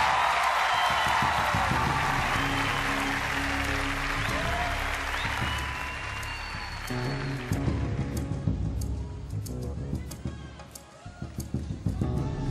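Audience applause over stage music; the applause dies away about two thirds of the way through, leaving the music playing on its own.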